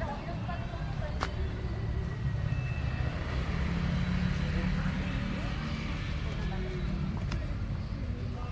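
A motor vehicle running past, a low rumble that grows to its loudest about halfway through and then fades.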